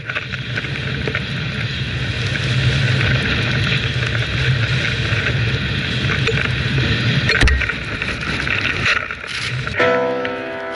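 A snowboard riding through deep powder: a continuous hiss of the board sliding and spraying snow, mixed with a rumble of wind on the action camera's microphone. There is one sharp knock about seven seconds in.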